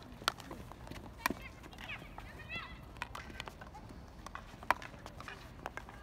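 Field hockey sticks striking balls on artificial turf: sharp, scattered clacks, the loudest about a second in and again near five seconds in. Distant players' voices call out about two to three seconds in.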